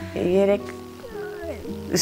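A woman's voice holding a drawn-out, gliding syllable, with soft background music under the talk.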